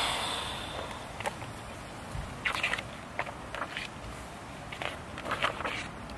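A puff of breath blown out at the start, fading over about a second, then faint scattered clicks and scrapes of a hardcover picture book being opened and its pages handled.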